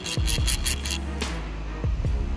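Old Shakespeare fly reel's spool worked by hand close to the microphone, its click ticking rapidly; the owner says the reel has zero drag. Background music with a deep bass beat runs underneath.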